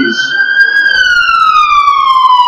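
Emergency-vehicle siren wailing: one loud tone climbs slowly to a peak under a second in, then glides steadily down in pitch.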